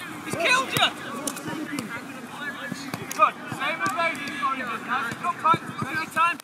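Players and coaches shouting and calling across an outdoor football pitch during a drill, with a sharp thud of a football being kicked about three seconds in.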